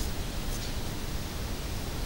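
Steady hiss of a microphone's background noise, with no other distinct sound.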